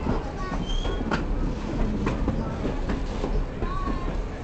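Passenger train rolling slowly on the rails as it arrives at a station: a steady low rumble, with a few sharp clacks from the wheels and brief high squeals from the wheels on the track.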